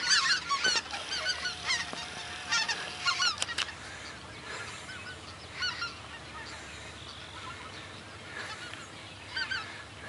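A large flock of geese calling in flight overhead, many overlapping high yelping honks. The calls are thickest in the first few seconds, thin out in the middle and build again near the end.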